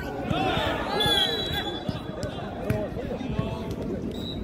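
Overlapping shouts and chatter of many voices across an outdoor jokgu ground, with a few sharp thumps of a ball being kicked or bouncing in the second half. A brief high steady tone sounds about a second in.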